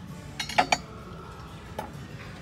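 Ceramic plates clinking against each other as a stack of them is handled: a quick cluster of ringing clinks about half a second in, and a single clink near the end.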